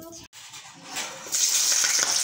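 Sliced onions tipped from a chopping board into hot oil in an iron wok begin sizzling suddenly, a little over a second in, with a loud, steady hiss.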